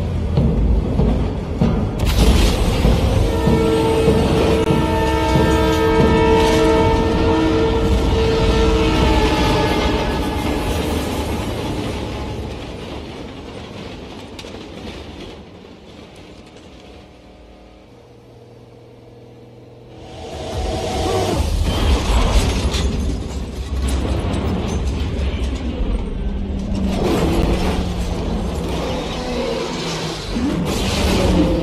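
Film sound mix: a train horn sounds a long held chord over racing car engines and score music. The sound fades to a quiet low hum around the middle, then the engines come back loud for the last third.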